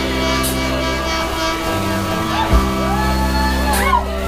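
Live rock band with saxophone, electric guitar, bass and drums playing held chords over a heavy bass. A drum hit lands about two and a half seconds in, and shouted vocals come in over the second half.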